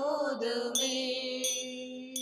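A Tamil devotional hymn: a voice holds one long sung note over instrumental accompaniment, with bright chime-like notes ringing out about every three-quarters of a second.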